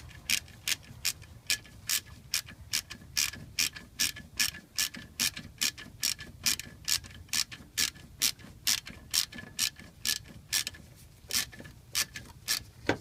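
Ratchet wrench pawl clicking in steady back-and-forth strokes, about two to three clicks a second, as it turns an alternator mounting bolt.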